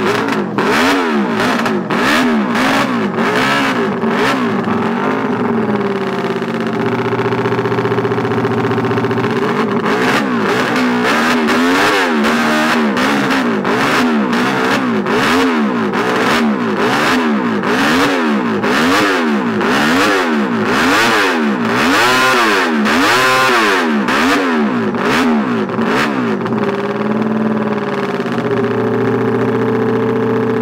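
Replica 1964 Honda RC162 250cc racing motorcycle engine revved in quick repeated throttle blips, about one a second, each rising and falling in pitch. It drops back to a steady idle for a few seconds about a quarter of the way in and again near the end.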